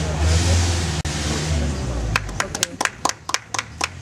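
A low rumble, then two or three people clapping their hands at about five claps a second, starting about halfway through.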